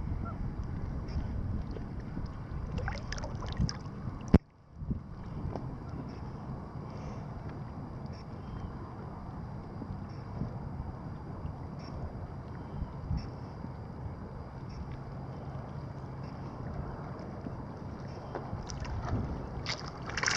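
Small waves lapping against a small fishing craft at water level, with wind buffeting the microphone. A sharp click about four seconds in is followed by a brief dropout of all sound.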